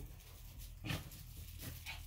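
Small dog making a few short sounds as it plays at a plush toy, the loudest about a second in.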